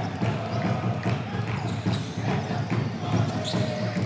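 Basketball being dribbled on a hardwood court, a series of sharp bounces over the steady low background noise of a crowd in an indoor arena.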